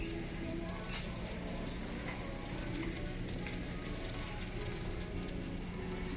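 Store background music playing faintly over a steady low hum of shop ambience, with a few sharp clicks about a second in and near the end, and a brief high squeak just under two seconds in.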